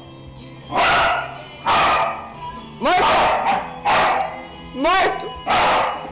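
Blue heeler (Australian cattle dog) barking repeatedly, about six loud barks roughly a second apart.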